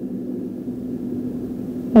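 A steady low rumble with a faint, even hum running under it.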